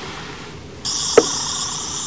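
Toy sonic screwdriver switched on with its light, giving off a loud, steady, high-pitched electronic whir that starts suddenly just before a second in, with a single click partway through.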